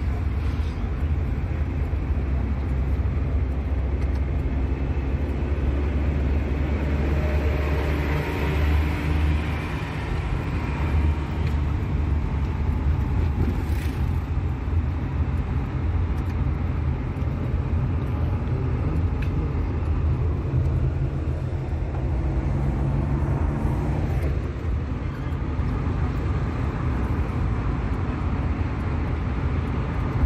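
Steady engine and road rumble of a moving vehicle, heard from inside its cabin while it drives along a paved road. The engine note shifts a little at times.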